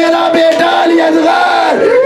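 A man's amplified voice through a microphone, wailing a drawn-out mourning lament in long held notes, over a crowd of mourners crying.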